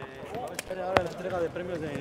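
Voices of several people talking at a distance on an outdoor basketball court, with a single sharp smack about a second in.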